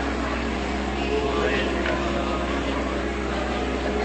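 Steady electrical hum and hiss of an old tape recording of a meeting hall, with faint, scattered voices from the congregation.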